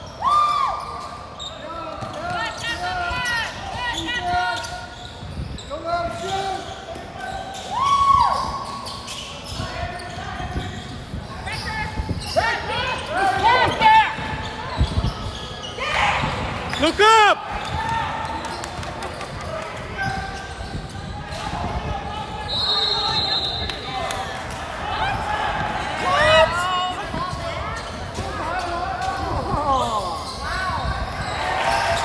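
Basketball sneakers squeaking on a hardwood gym floor, many short squeaks coming and going, with a basketball bouncing. The sound echoes in a large gym hall.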